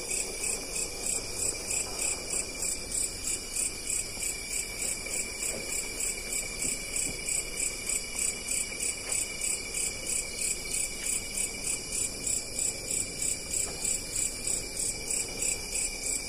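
Night insects, crickets, chirping in an even pulse about four times a second over a steady high trill.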